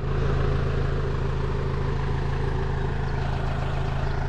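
New Holland 4040F vineyard tractor's diesel engine idling at a steady, unchanging speed.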